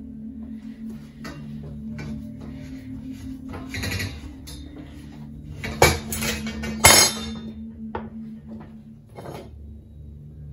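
Knocks and metallic clinks of copper pipe, a tape measure and a pipe cutter being handled on a wooden worktop, with two loud clacks about six and seven seconds in. Background music plays underneath.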